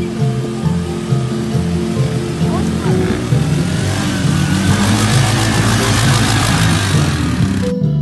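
Background music over an ATV driving through a shallow river: the engine runs and water splashes, the splashing growing louder from about halfway through as the quad comes close. The splashing cuts off abruptly near the end, leaving only the music.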